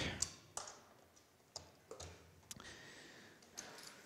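About six faint, scattered clicks and taps of buttons and equipment being handled as a projection device is switched on and set up.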